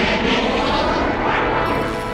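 Cartoon rocket-thrust sound effect: a steady rushing roar that starts suddenly.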